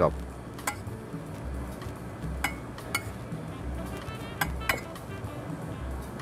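Metal tongs clinking against a plate as a salad is tossed, a handful of scattered sharp clinks, two of them ringing briefly. Faint background music with a low beat underneath.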